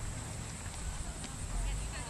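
Distant, unintelligible voices from across an open field, with a few faint knocks. A low wind rumble on the microphone swells near the end.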